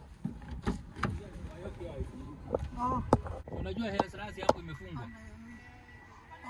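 Clicks and knocks of a car door being opened and shut as a passenger gets into the back seat. Brief indistinct voices come in between.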